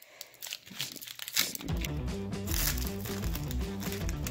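Foil booster-pack wrapper crinkling and tearing as it is pulled open by hand. About a second and a half in, background music with a steady bass line comes in over it.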